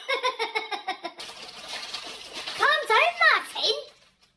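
A man laughing and speaking, with a loud run of high, rising-and-falling vocal sounds about three seconds in.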